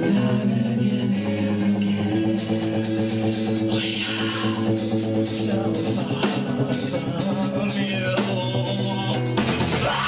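Live rock band playing with guitars, bass and drums while the singer sings into a microphone. Sustained guitar chords carry the first couple of seconds, then the drums and cymbals come in, and the band shifts into a heavier section near the end.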